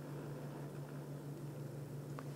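Quiet room tone: a steady low hum under a faint hiss.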